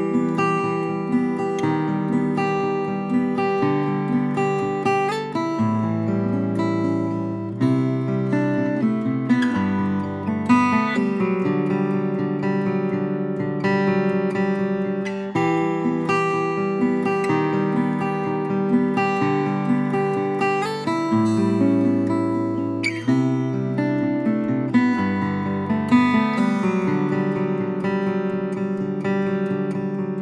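Collings 01 12-fret acoustic guitar, a small-bodied guitar with a torrefied spruce top and torrefied figured maple back and sides, played solo with the bare fingers. It gives a steady flow of picked chords and melody notes over a moving bass line.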